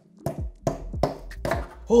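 Hammer tapping the spine of a serrated bread knife set into a scored block of clear ice, about five sharp taps roughly every half second, driving the blade in to split the block. The block splits in two near the end.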